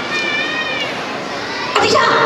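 A high-pitched, drawn-out voice calls out over a crowd's murmur, and a louder voice starts speaking near the end.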